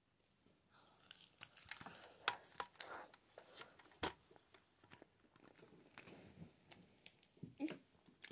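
Faint chewing and mouth noises of a child eating chips and sausage, with irregular sharp clicks scattered through, the sharpest about four seconds in.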